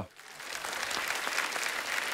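Studio audience applauding: the clapping builds up over about half a second and then holds steady.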